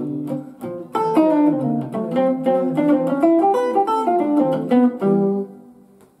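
Archtop jazz guitar playing a short swing-style single-note line over an A7 chord, built on an E minor six arpeggio so that it uses the natural ninth rather than the flat ninth. The notes come quickly from about a second in, and a last held note rings and fades near the end.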